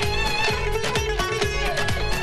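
Azerbaijani tar playing a lively folk melody, with a steady drum beat behind it.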